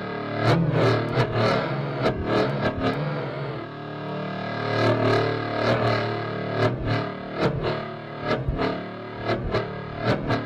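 A synthesized lightsaber hum from a Novation Peak synth (detuned sawtooth oscillators with chorus, delay and reverb), played through a Bugera V5 5-watt tube combo amp and picked up by a lavalier mic swung past the speaker on a toy lightsaber. It is a steady buzzing hum that swells and bends in pitch with each swing, the Doppler effect, about two swings a second, with a short lull about four seconds in.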